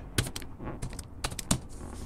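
Computer keyboard typing: an irregular run of key clicks, with one louder click about one and a half seconds in.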